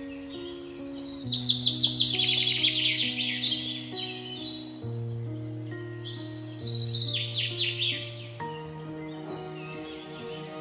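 Background music of slow, held low notes, with bursts of rapid, high-pitched bird twittering over it, loudest from about one to three seconds in and again around seven to eight seconds in.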